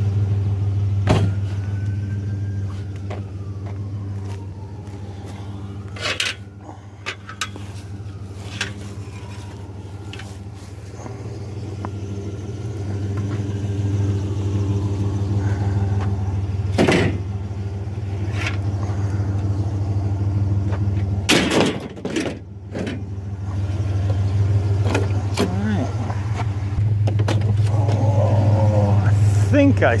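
Pickup truck engine running with a steady low hum, broken by several sharp knocks and clunks, the loudest about 17 and 22 seconds in.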